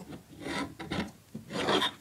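Plastic LEGO Hero Factory figure turned around by hand, its plastic feet scraping across a plastic surface in two short scrapes.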